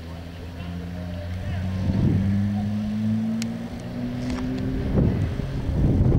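A motor vehicle engine running steadily, its pitch rising slowly for a couple of seconds in the middle, with gusts of wind buffeting the microphone.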